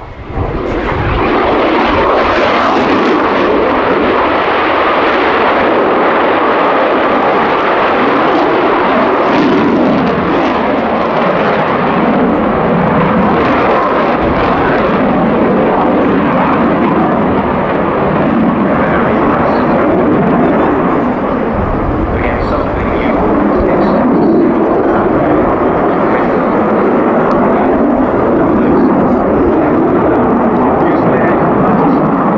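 Twin General Electric F404 turbofan engines of an F/A-18C Hornet, a loud, steady jet roar as the fighter flies past in its display.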